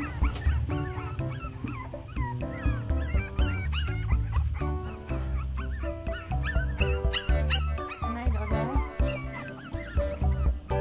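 Background music with a steady beat, over puppies whimpering and yipping in short, high, bending cries.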